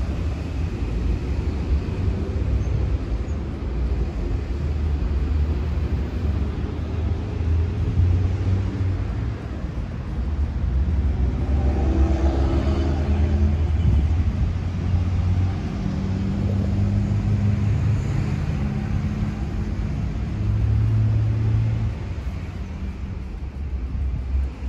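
Steady low rumble of motor vehicles, with a low hum that swells for several seconds in the second half.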